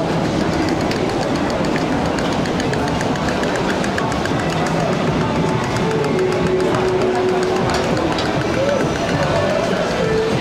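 Busy pedestrian street ambience: passers-by talking, with music playing and a steady hubbub throughout.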